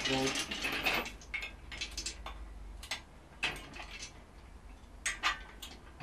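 Steel parts of an engine stand and its mounting bracket clanking and rattling as the bracket is secured: a scraping rattle in the first second, then a string of separate metal clicks and clinks.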